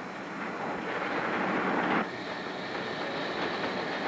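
Steady mechanical noise, a dense unpitched rush, louder in the first half and dropping off abruptly about two seconds in.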